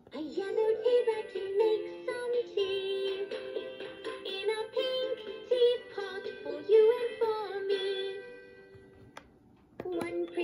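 Fisher-Price Laugh & Learn toy teapot playing a children's song with a sung melody through its small speaker. The tune fades out about eight seconds in. A click follows as its light-up button is pressed, and the next tune starts at the very end.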